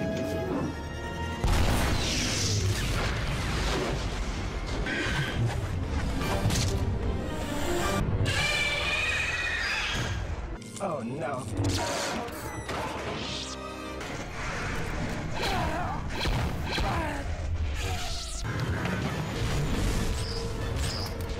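Animated-series battle soundtrack: orchestral score mixed with crashes, booms and impacts. The sound changes abruptly every few seconds as one clip gives way to the next.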